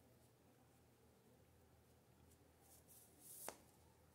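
Near silence, with a faint rustle of T-shirt yarn being worked through stitches with a crochet hook and a single small click about three and a half seconds in.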